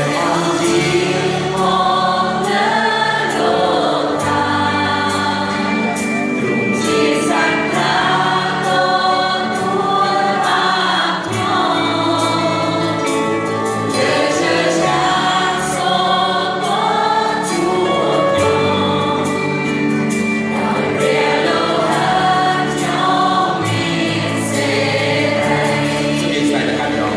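Large choir singing a worship song with a live band accompanying, recorded from among the audience in a big reverberant hall.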